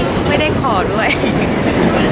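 Steady loud rumble of a passenger train alongside a railway platform, with people's voices over it.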